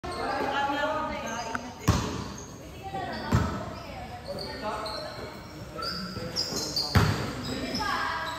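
A basketball thuds three times on the court, about two, three and a half and seven seconds in, each echoing through the large hall, amid players' voices calling out.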